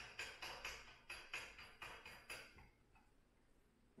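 Drill chuck of a benchtop mill being tightened by hand onto a center drill: a quick run of faint clicks, about five a second, that stops after a couple of seconds.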